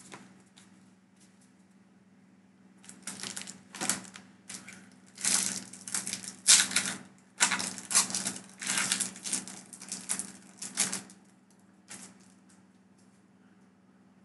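Foil booster-pack wrapper crinkling and crackling in the hands: a dense run of crisp, irregular crackles that starts about three seconds in and dies away about three seconds before the end, over a faint steady low hum.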